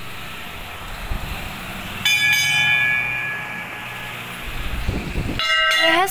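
Temple bell struck about two seconds in, ringing with several bright high tones that fade over about a second and a half; it is struck again near the end.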